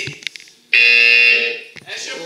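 Electronic game-show buzzer sound effect from the projected game board. It plays as one loud, steady, harsh tone that starts suddenly a little under a second in and stops after under a second.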